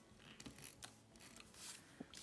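Faint, short scratchy sounds of a correction tape dispenser being drawn across planner paper.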